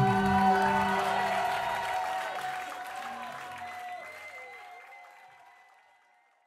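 The last chord of a live rock band, electric guitars ringing on with sustained tones, dying away steadily to silence near the end.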